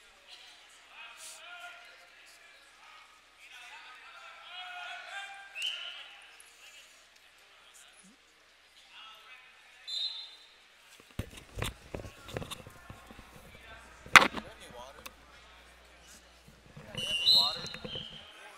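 Indistinct shouting voices in a gymnasium during a wrestling bout. From about eleven seconds in there are irregular sharp thuds and slaps, the loudest a little after fourteen seconds.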